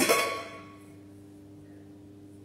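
A lid knocking against an enamelled steel mug as it is lifted off: one sharp clink at the start that rings on in a few clear tones and slowly fades.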